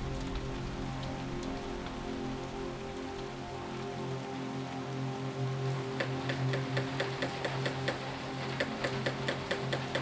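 Small hammer tapping a chasing punch on silver in repoussé work, quick regular light taps about four a second, starting about six seconds in, over background music with sustained tones.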